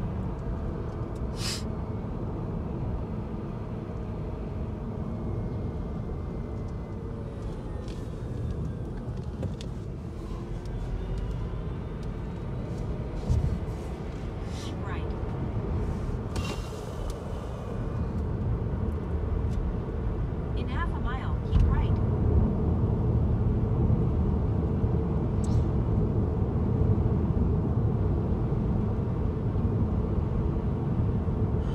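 Road and engine noise heard from inside a moving car: a steady low rumble that grows louder about two-thirds of the way through, with a few brief knocks.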